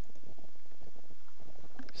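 Steady low, crackly rumble of background noise, with no other distinct event.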